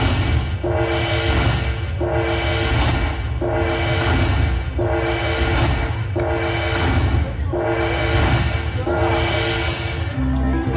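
Aristocrat Dragon Link slot machine playing its bonus-tally music, a horn-like phrase of two held tones over a deep rumble that repeats about every 1.3 seconds while the coin values are collected into the win meter. A short falling whistle sounds about six seconds in.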